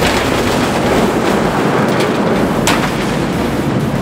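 Large steel sliding shed door rumbling along its track as it is pushed open; the rough, steady rumble starts suddenly and holds an even level.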